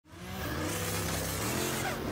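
Car engine accelerating, its pitch climbing slowly after a quick fade-in.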